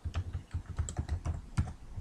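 Typing on a computer keyboard: a quick, uneven run of keystrokes while a password is entered.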